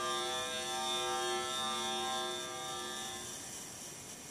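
Electronic music synthesized in Max/MSP from sensor data: a chord of steady held tones with a wavering high tone on top, fading out about three seconds in to a faint hiss.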